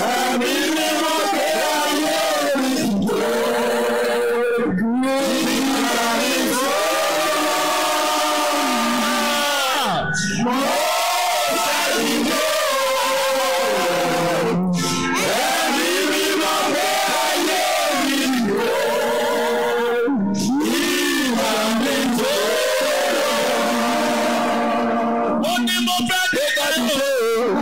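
Loud worship singing and chanting: voices hold long, wavering sung phrases, with short breaks every few seconds, while a congregation cries out in fervent prayer.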